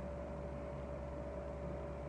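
Steady room hum: a constant low drone with a faint, even whine above it.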